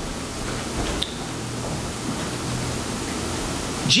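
Room tone: a steady hiss with a faint low hum underneath, and a small tick about a second in.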